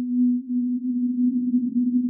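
Sine-wave synth tone from Absynth 5 run through its Aetherizer granular effect, held at one low pitch while the grain rate is turned up. About half a second in, the clean steady tone turns rough and grainy, its level flickering rapidly.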